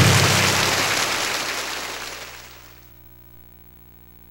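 Karaoke machine's score-screen sound effect: a noisy, crash-like wash that fades out over about three seconds, leaving a faint steady hum.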